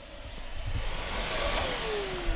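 Vacuum cleaner running with a steady hiss. From about a second and a half in, its motor whine falls steadily in pitch as the motor winds down.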